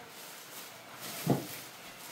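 Black plastic bag rustling and crinkling as it is handled and items are pulled out of it, with one brief voice sound a little past a second in.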